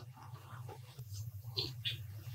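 A man sipping from a small glass close to a microphone: a few faint, brief sips and swallows over a steady low electrical hum.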